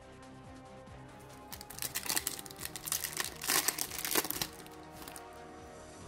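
Foil wrapper of a Yu-Gi-Oh! booster pack crinkling and tearing open, a loud rustling burst that starts about a second and a half in and stops about three seconds later. Background music plays throughout.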